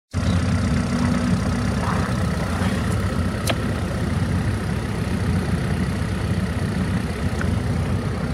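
Suzuki Let's 4 Palette scooter's small four-stroke single-cylinder engine idling steadily, with one sharp click about three and a half seconds in.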